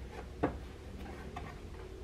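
A few light clicks and taps of small hard objects being handled, the sharpest about half a second in, over a low steady room hum.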